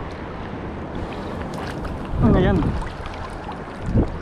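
Steady wind noise on the microphone mixed with shallow seawater washing over rocks. A short voiced exclamation, falling in pitch, comes a little after two seconds in, and a brief knock comes at the very end.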